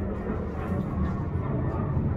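Steady low rumble of traffic from a nearby road.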